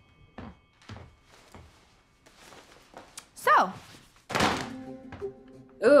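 Three soft thuds about half a second apart, then a sound sliding steeply down in pitch and a brief loud rush of noise, over faint background music.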